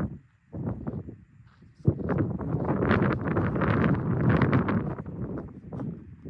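Gusty wind buffeting the microphone, a rough rumbling rush that starts suddenly about two seconds in and eases near the end.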